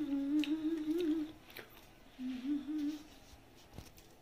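A woman humming a wavering tune with her mouth closed. She breaks off about a second in and hums a shorter phrase again near the middle. A few light clicks sound between the phrases.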